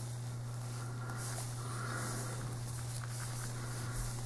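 A steady low hum over faint room tone, with no distinct sounds rising above it.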